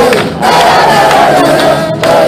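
Loud concert crowd singing and shouting along in unison, many voices holding one wavering note, with a brief dip about a third of a second in.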